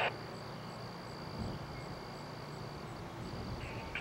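Low, steady rumble of a distant diesel locomotive approaching at the head of a freight train, under a steady high insect buzz and faint high chirps about three times a second.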